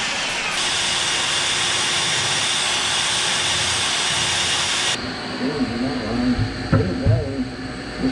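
A hole saw on an electric drill cutting through a fiberglass boat transom, with a vacuum hose drawing off the dust at the cut: a steady hissing whine that stops abruptly about five seconds in. Voices and laughter follow.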